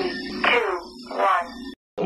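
Countdown intro sound: three long falling calls, about a second apart, over a steady music bed, one for each count of the three-two-one countdown.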